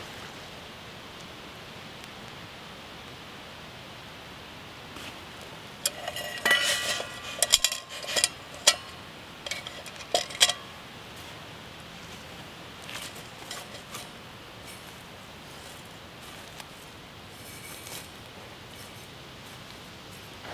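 Steel mug and thick steel water bottle clinking and knocking against each other as they are set and shifted in the embers of a fire: a cluster of sharp, ringing metal clinks about six to eleven seconds in, then a few lighter taps.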